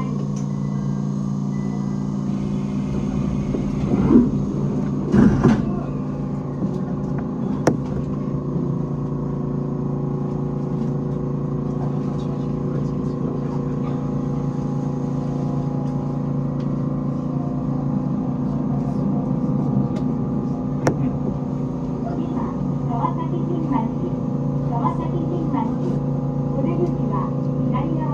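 E127 series electric train heard from the driver's cab, with a steady, many-toned electrical hum as it stands and then pulls away. There are two loud knocks about four and five seconds in.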